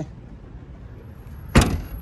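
The boot lid of a 2017 Holden Astra sedan being shut: one sharp slam about one and a half seconds in.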